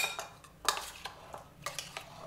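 Metal spoon stirring yogurt raita in a stainless steel bowl, clinking and scraping against the bowl's sides a few times. The first clink, right at the start, rings briefly.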